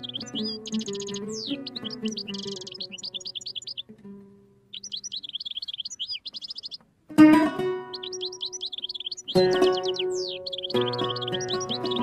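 Solo oud improvisation (taqasim) with a songbird's quick, chirping song mixed over it. The oud fades about four seconds in, leaving a brief gap and then the bird alone for about two seconds. The oud comes back with a loud plucked strike around seven seconds and plays on with fuller strokes.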